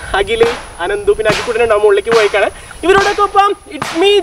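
A man's voice in a sing-song, chant-like delivery with several briefly held notes, broken by a few sharp smacking hits between phrases.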